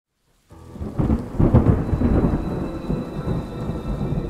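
Thunderstorm sound effect: rolling thunder over steady rain, starting about half a second in and loudest in the first two seconds, then rumbling on more evenly.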